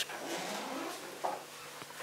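Quiet room tone: a faint, steady hiss with a brief faint murmur a little past the middle.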